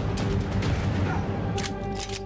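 Gunfight from a TV drama soundtrack: gunshots over a dense, noisy din and score music, with a quick run of sharp shots near the end.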